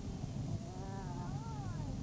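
Steady low road and engine rumble inside a moving motorhome. About half a second in, a drawn-out high call rises and falls twice.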